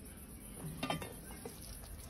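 Quiet, with a few faint short clinks of metal cookware on a charcoal grill, clustered about a second in.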